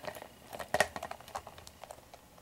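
A few soft clicks and light taps of hard plastic Littlest Pet Shop toy figurines being handled and set down on a hard surface, with faint rustling between them.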